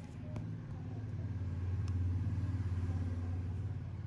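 A low droning rumble that swells to its loudest about halfway through and eases off near the end, with two faint clicks in the first two seconds.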